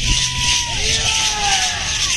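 Matachines dancers' hand rattles shaking in a steady hiss over drums beating underneath. A wavering, voice-like tone glides downward near the middle.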